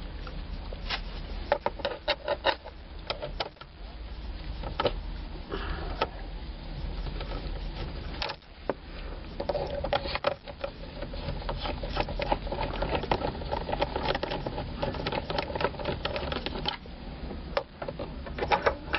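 Hand nut driver working small hex-head screws out of the deep wells of a plastic steering-column cover: scattered clicks and scraping of the tool and gloved hands against the plastic, over a steady low hum.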